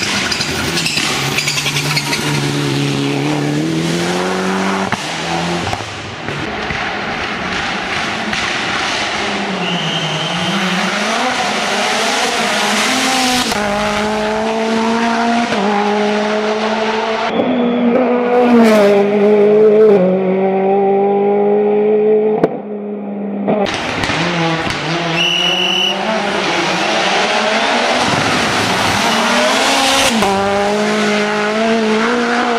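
Hillclimb race cars driven flat out through tight corners one after another, their engines revving up and dropping back with gear changes and lifts. Brief tyre squeals twice as the cars are pushed through the bends.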